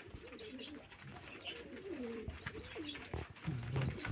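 Domestic pigeons cooing, several wavering calls one after another, with faint high chirps of small birds.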